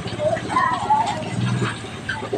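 Footsteps on a gravel road at walking pace, with a voice briefly heard over them twice.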